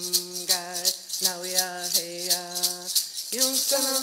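Women's voices singing a Mohawk water song in unison, held notes moving in steps, over a hand rattle shaken in a steady beat of about four shakes a second. A little past three seconds in, the rattle changes to a continuous shaking as a new phrase begins.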